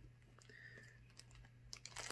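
Near silence: a few faint small clicks and light handling noise from a plastic mailer bag being turned in the hands, over a low steady hum.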